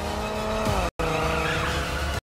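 Car tyres squealing in a skid: a pitched screech that falls in pitch, breaks off briefly about a second in, then carries on.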